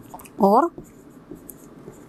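Faint, short scratches and taps of a pen writing on an interactive display screen, with one spoken word about half a second in.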